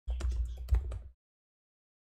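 Typing on a computer keyboard: a quick run of keystrokes lasting about a second.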